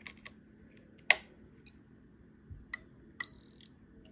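Light clicks of test probes on capacitor leads, the sharpest about a second in, then a short high electronic beep from a Peak Atlas ESR70 meter near the end as its reading comes up.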